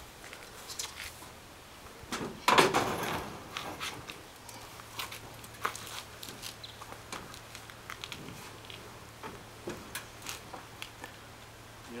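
An electric range being tipped and lifted by hand: a loud scrape and clunk about two and a half seconds in as the stove tilts, then scattered light knocks and scuffs as it is held and shifted.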